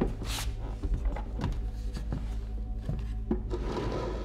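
Experimental soundtrack: a steady low drone under scattered short knocks and clicks, with a brief hissing swish just after the start and a rougher rubbing noise near the end.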